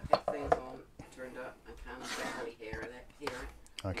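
Low, indistinct speech, with a few light clicks and knocks from plastic PC fans being handled and set down.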